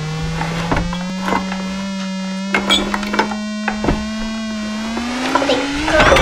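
A sustained droning note that slowly climbs in pitch, rising faster near the end, with dishes and glasses on a breakfast tray clinking now and then as it is tugged back and forth.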